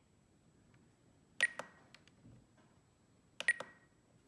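Spektrum DX9 radio transmitter beeping as its menu controls are pressed: two short high beeps, each with a click, about two seconds apart.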